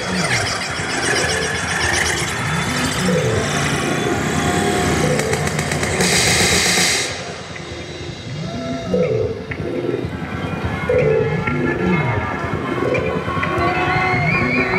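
Live hip-hop band and orchestra playing an instrumental passage, with a low rising-and-falling figure repeating about every two seconds. A loud hissing burst about six seconds in cuts off suddenly a second later.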